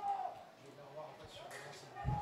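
Faint voices calling out across a football pitch during play.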